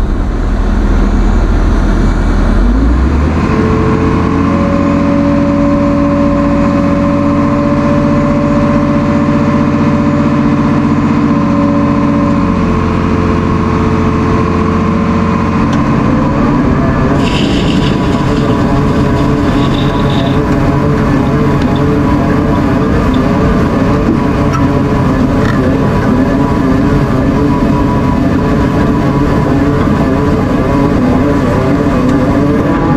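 Excavator's diesel engine running loud and close, with steady whining tones from the machine. About 16 s in, a tone rises as the revs pick up, and the sound turns rougher with a brief high hiss.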